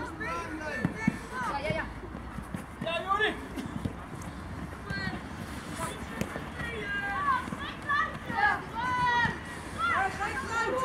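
Young players' voices calling and shouting across a football pitch during play, with a few short thumps about a second in and again around three seconds.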